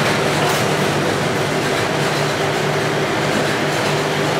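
Steady, loud whir of running machines and fans, a constant noisy rush with a low hum under it that does not change.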